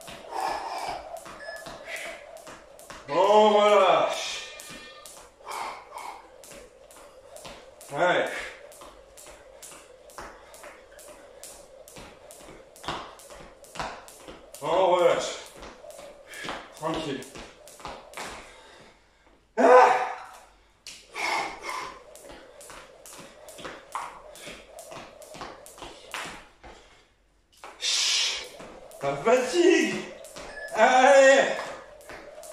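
Jump rope turning and ticking against a tiled floor, with the jumper's landings, in a fast, even rhythm of clicks. The clicks break off briefly twice: once before the middle and once near the end.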